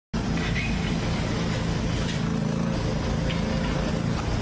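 An engine running steadily, a constant low rumble that cuts in suddenly right at the start.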